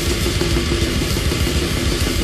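Deathgrind music from a studio recording: a drum kit pounding at a fast pace under a repeating, heavily distorted riff.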